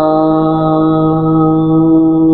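A man's voice holding one long, steady sung note at the close of a Saraiki devotional qasida, unaccompanied and without words.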